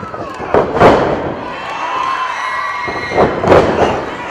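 Impacts of a pro wrestling match in the ring: loud slaps and thuds about half a second to a second in and again a little after three seconds, with the crowd shouting and cheering in between.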